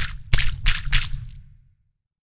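Ink-splatter sound effects for an animated logo: a quick run of four wet splats over a low rumble, fading out by about a second and a half.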